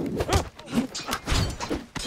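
Film fight sound effects: a quick hand-to-hand scuffle with several sharp thuds of blows and grabs, mixed with men's short grunts of effort.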